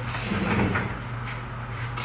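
Soft handling noises of a pair of red-handled pliers on a cardstock journal cover, with a soft rustle early on and a few light clicks later, over a steady low hum.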